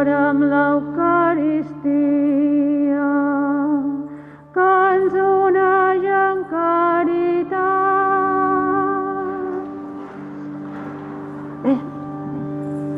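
A solo voice with vibrato sings a slow liturgical chant in long held notes, with a pause about four and a half seconds in, over steady sustained accompaniment tones. The voice stops about two-thirds of the way through, and the held accompaniment carries on to the end.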